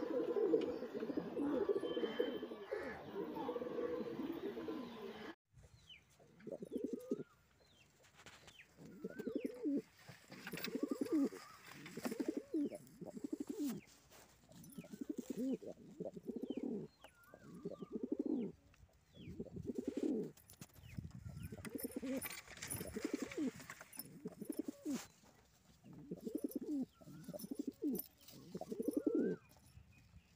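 Andhra high-flyer pigeons cooing over and over: low, throbbing coos about a second long, one every one and a half to two seconds. In the first five seconds the sound is denser and unbroken.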